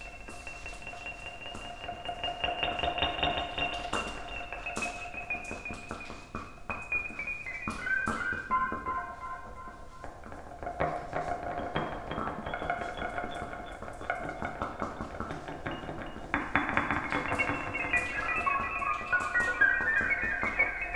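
Free-improvised electric guitar played through an amplifier: long held high tones that slowly rise, sway and step between pitches, with a fast flutter running through them and scattered light clicks.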